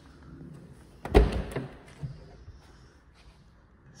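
1961 DKW F11's car door being opened: a loud clunk of the latch releasing about a second in, followed by a few lighter clicks as the door swings open.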